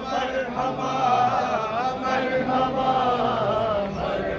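A crowd of men chanting a devotional refrain together, the voices holding long notes that waver up and down without a break.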